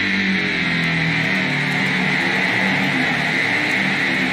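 Synthesizer keyboard solo played live: slow, held notes, with a change of note about a second in.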